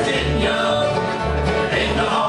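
Live bluegrass band playing: banjo, acoustic guitars, upright bass and resonator guitar together, with the bass stepping through notes underneath.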